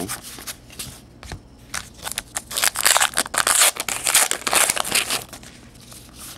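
A stack of Topps Heritage baseball cards being flipped through by hand, cardboard sliding and rubbing against cardboard in quick rustles and flicks, busier and louder from about halfway through.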